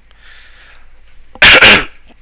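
A man coughing close to the microphone: a faint breath in, then one loud, harsh double burst about a second and a half in.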